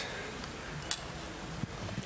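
Low room tone of a large hall with a steady hiss, broken by a single sharp click about a second in.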